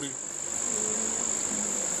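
A steady, high-pitched tone, an insect-like trill or whine, holds unbroken under a faint background murmur of a voice.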